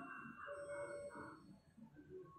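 Whiteboard marker squeaking against the board as a line is drawn: a short drawn-out squeal in the first second, then a few faint brief squeaks.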